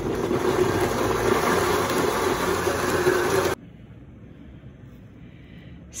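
Vitamix blender running at speed, blending a fruit-and-kale smoothie, then cutting off suddenly about three and a half seconds in.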